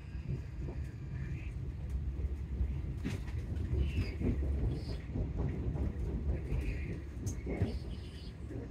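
Passenger train running, heard from inside the carriage: a steady low rumble of the wheels on the track, with short high squeaks scattered through.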